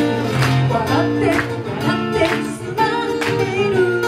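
A woman singing a song live into a microphone, accompanied by a plucked acoustic guitar.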